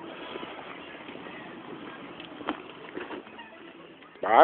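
Faint, steady outdoor background noise with a few light knocks, one about two and a half seconds in and another near three seconds.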